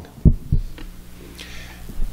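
Two dull low thumps about a third of a second apart, picked up close on the pulpit microphone, then a steady low hum and a short soft breath.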